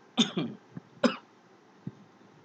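A man coughing and clearing his throat: a short rough burst just after the start and a sharper cough about a second in.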